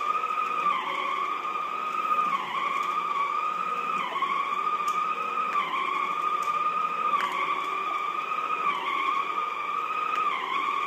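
Shark Sonic Duo floor scrubber's motor running with a steady high-pitched whine while buffing polish into a hardwood floor. Its pitch sags briefly about every second and a half as it is worked back and forth.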